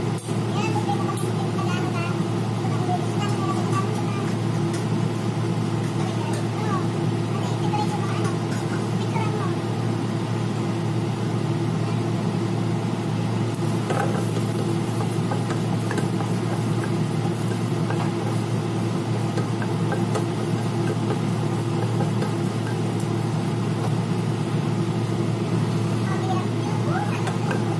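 Ginger strips frying in oil in a nonstick wok on a gas stove, over a steady low hum. A wooden spatula scrapes through the pan once, about halfway through.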